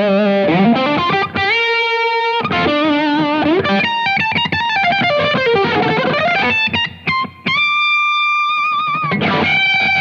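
Electric guitar played through a Blackstar St. James EL34 all-valve amp on its distorted channel: a single-note lead line of held notes with vibrato, bends and slides. Near the end it rests on a long, high note with vibrato.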